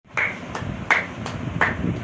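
One person clapping hands five times in a steady rhythm, about three claps a second.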